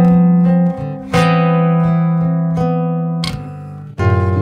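Acoustic guitar playing slow, ringing chords. A low note is held through the first second, a new chord is plucked about a second in and rings out as it fades, and a sharp pluck comes near the end.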